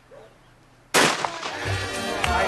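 A single shotgun shot about a second in: one sudden loud crack with a short ringing tail, breaking near quiet. Music comes in right after it.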